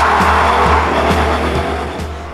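Rear tyres of a 2017 Ford Mustang GT squealing through a wheelspinning launch, with its 5.0-litre V8 running hard, the sound easing slightly as the car pulls away. Background music underneath.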